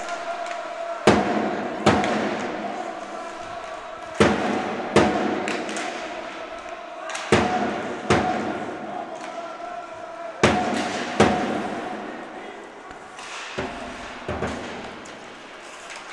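Sharp bangs in pairs, the pairs repeating evenly about every three seconds, each echoing through the ice hall.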